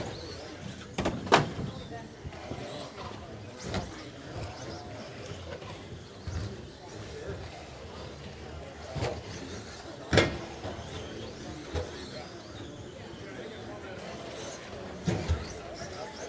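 Sharp knocks from RC short-course trucks of the Traxxas Slash stock class landing and hitting the track as they race, loudest about a second in and again about ten seconds in, with further knocks near four, nine and fifteen seconds. Steady hall noise and voices underneath.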